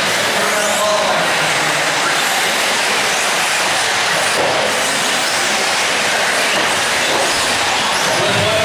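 Several 1/8-scale nitro RC buggies racing at once, their small glow engines blending into a loud, steady, high buzz with no break.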